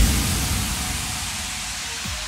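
A sudden hit, then a hissing noise wash that fades steadily: a noise-sweep sound effect in the break of an electronic music track.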